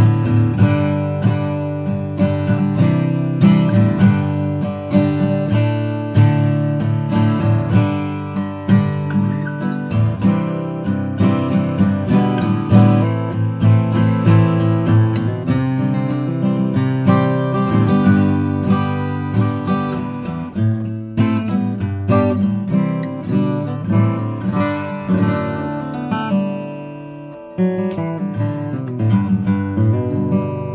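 Bourgeois OM cutaway acoustic guitar with a torrefied Adirondack spruce top, strummed in a steady rhythm of ringing chords. The chords ring down briefly near the end before another strum picks the rhythm back up.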